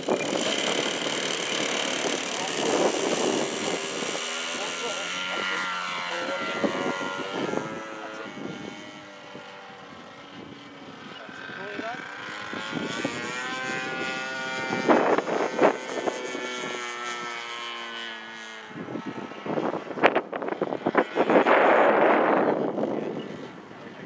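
Engine and propeller of a 3DHS Extra 330LT radio-controlled aerobatic model plane on its take-off run and climb-out. The pitch slides as it flies past, the sound fades as it climbs away and then grows louder as it comes back. A few short loud bursts come near the end.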